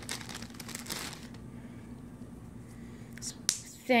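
A small clear plastic zip bag crinkling as it is handled and opened, busiest in the first second or so, with a couple of small clicks near the end. A faint steady hum underneath.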